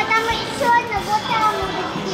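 A young child's high-pitched voice talking, with children playing in the background.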